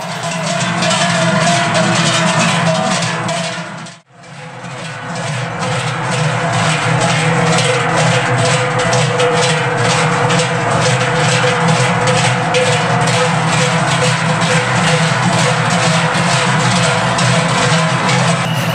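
Many large Swiss Treicheln, forged cowbells hung from shoulder yokes, swung in unison by a marching group of Trychler: a steady rhythmic clanging over deep, sustained bell tones. The sound drops out briefly about four seconds in.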